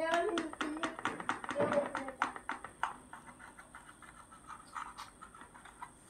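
Knife slicing through a fried Maggi-noodle martabak on a plate: a quick run of sharp clicks and taps, several a second, that grow fainter after about three seconds.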